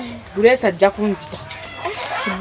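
A chicken clucking in a few short calls about half a second in, quieter for the rest.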